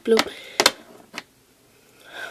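A child's voice says "blue", followed by a few sharp clicks of small plastic toy figures knocking against each other and a tabletop as they are handled.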